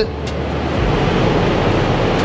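Steady rush of air and fan noise from a downdraft paint spray booth's ventilation running.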